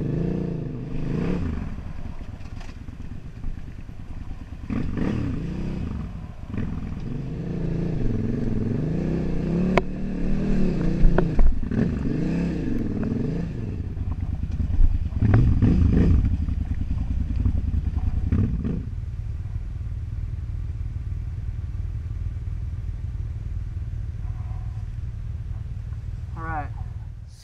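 KTM 950 Super Enduro's V-twin engine revving up and down as the bike climbs over rock, with a few sharp knocks and clatter from the tyres and chassis on the stones. About two-thirds of the way through it settles into a steady idle.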